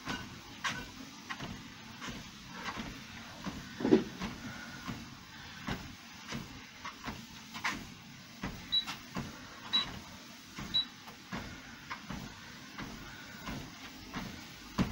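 Footfalls on a Fitnord treadmill belt, an even thud about every two-thirds of a second, with one louder thump about four seconds in. Midway the treadmill console beeps three times, a second apart.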